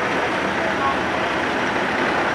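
Steady outdoor noise of vehicle engines running, an even rumble and hiss with no single event standing out.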